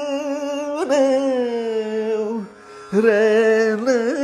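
A male Carnatic vocalist singing a wordless alapana in raga Saveri: long held notes that waver and slide in gamakas. The voice breaks off briefly about two and a half seconds in, then comes back on a held note.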